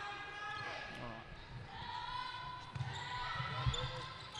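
Netball in play in a large hall: low thuds of the ball and players' feet on the court, mostly in the second half, under faint voices of players and spectators.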